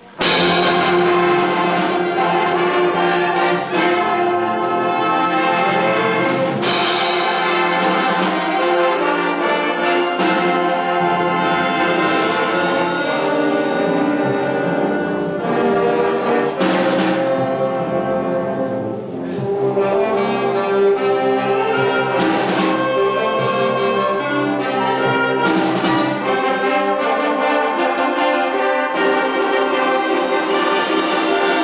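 A school concert band playing, opening with a sudden loud full-band chord right at the start. Sustained brass-led chords follow, with sharp struck accents every few seconds and a brief softer passage about nineteen seconds in.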